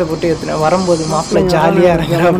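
A person's voice runs all through, in continuous pitched phrases, with a faint hiss over about the first second.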